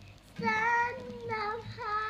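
A child singing to a nylon-string classical guitar. After a short pause the voice holds one note, then sings a few short notes that slide up in pitch.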